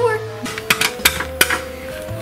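Knocking on a small plastic toy-house door with a doll's hand: three sharp taps about a third of a second apart, starting about half a second in.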